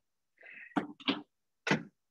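A person sneezing over a video-call microphone: a brief high in-breath, then three sharp bursts, the last about half a second after the first two.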